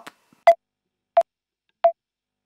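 Metronome count-in clicks: three short, pitched clicks evenly spaced about two-thirds of a second apart, counting in before the music starts.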